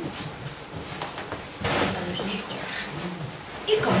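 Indistinct voices in a room, softer than the narration around them, with a brief rustling noise about a second and a half in.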